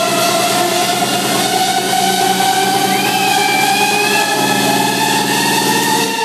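Electro house build-up playing loud over a club sound system: a siren-like synth tone slowly rising in pitch over a fast buzzing roll, with the bass cut out. The low roll stops near the end as the build breaks.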